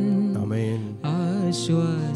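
A slow devotional song: a voice singing with a wavering pitch over steady, held chords, with a brief dip about a second in.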